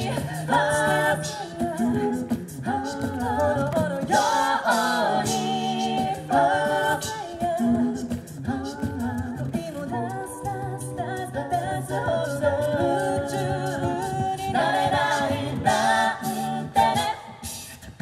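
A cappella group singing through a PA system: a female lead vocal over several backing voices in harmony and a sung bass line, with beatboxed vocal percussion ticking along in the highs.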